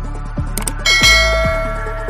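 Bell-ding sound effect of a subscribe-reminder animation: a bright chime just under a second in, ringing on for about a second, preceded by two quick mouse-click effects. Electronic background music with a steady beat runs underneath.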